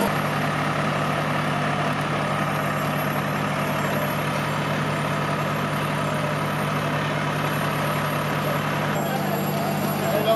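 Fire trucks' diesel engines running steadily, a constant low hum over a bed of outdoor noise.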